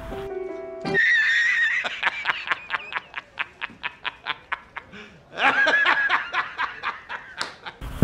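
High-pitched laughter: a long run of quick 'ha' pulses, about five a second, then a higher squealing laugh about five seconds in.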